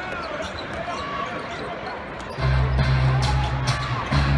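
Basketball bouncing on a hardwood arena court over the murmur of the crowd. About two and a half seconds in, loud bass-heavy arena music starts over the PA.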